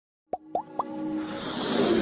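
Animated logo intro sting: three quick pops, each gliding upward in pitch, followed by a swelling whoosh that builds steadily louder.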